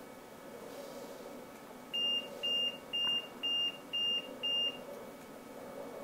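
Electronic alarm on a powered bed beeping six times in quick succession, about two short high beeps a second, then stopping.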